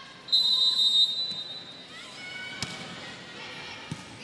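Referee's whistle blown once, a steady high note lasting about a second, signalling the serve. About two and a half seconds in comes a sharp slap of the volleyball being served, and a second hit near the end as it is received.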